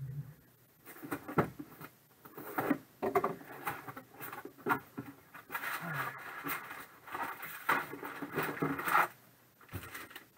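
White mailer envelopes rustling and scraping as they are pulled out of a cardboard case box and stacked by hand, in a run of irregular crinkles and scuffs.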